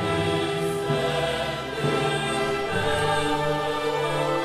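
A large mixed choir singing with a string orchestra, holding sustained chords that change about every second.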